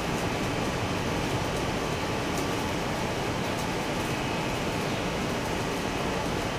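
Steady background noise with no voice: an even hiss and low rumble that holds at one level throughout.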